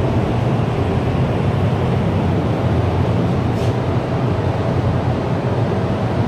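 Steady low rumble and hum of a paint spray booth's ventilation fans running.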